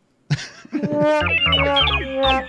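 A short synthesized musical sound drop starts about a third of a second in, with a run of falling notes over a low bass.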